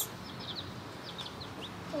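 Baby chicks, black sex link and Ameraucana, peeping in a cardboard carrier box: a scattering of short, high peeps.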